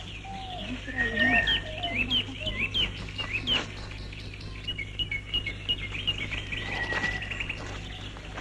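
Several birds chirping and calling. A run of quick hooked chirps comes in the first half, with lower sliding whistles underneath, and a faster run of chirps follows in the second half.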